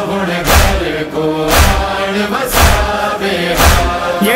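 Interlude of a Shia noha (Muharram lament): a chorus chanting a held, slow melody over a deep percussive beat struck about once a second.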